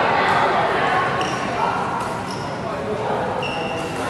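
Athletic shoes squeaking in short, high chirps on a badminton court floor, a few times, over echoing background chatter in a large hall.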